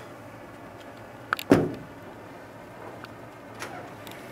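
A short click, then one loud, sharp thump about a second and a half in that dies away quickly, over low room noise.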